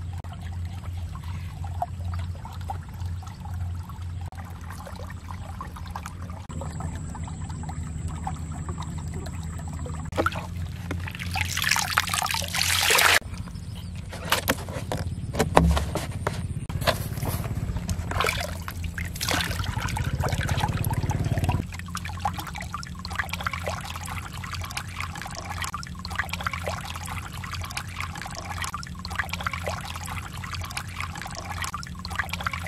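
Water trickling and sloshing in a shallow muddy pool as plastic-bottle fish traps are handled. A louder stretch of water pouring out for about three seconds begins about ten seconds in, followed by scattered splashes.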